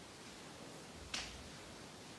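A single sharp click a little over a second in, over a steady faint hiss.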